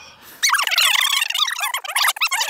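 A flock of birds calling in a loud, dense chatter of rapid overlapping chirps, starting about half a second in.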